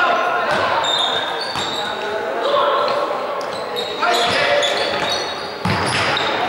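Basketball game on a hardwood court: the ball bouncing, sneakers squeaking on the floor, and players' and coaches' voices calling out.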